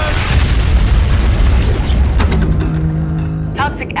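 A deep trailer boom hits suddenly and trails off into a long, loud rumble. After about two seconds a low, steady drone takes over, with a few sharp ticks over it.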